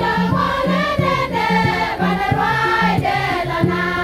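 A choir of women singing together, over a steady beat and a repeating low bass line.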